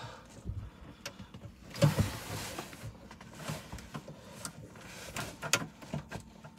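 Hand-worked plastic wiring harness connectors on a car's gateway computer module being wiggled loose: scattered small clicks with a longer rustle about two seconds in and a couple more clicks near the end.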